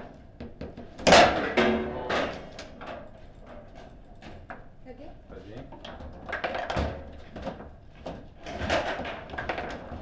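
Table football in play: a run of sharp clacks and knocks as the ball is struck by the rod men and hits the table walls, the loudest a hard knock about a second in. People's voices come in between.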